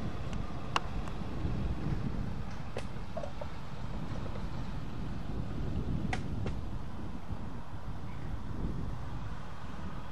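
Low, steady engine and tyre rumble of a pickup truck driving past on the airfield perimeter road, swelling slightly through the middle and then easing, with a few faint clicks.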